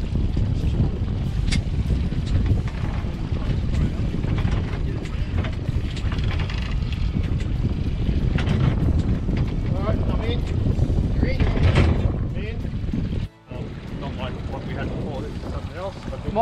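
Steady wind rumble on the microphone of an open fishing boat on the water, with faint voices here and there; the sound drops out briefly about 13 seconds in.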